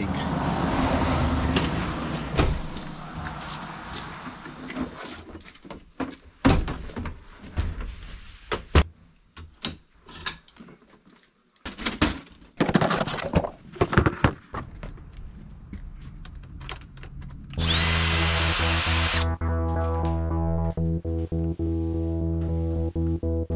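Repair noises on a motorcycle's front end: scattered clicks and knocks of hand tools and plastic parts being handled, with short quiet gaps between them. Near the end a small power tool whirs briefly, and music with a steady bass comes in.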